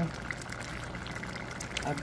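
Thickening pork sauce boiling hard in a stainless steel skillet: a steady bubbling with small scattered pops as the liquid cooks down.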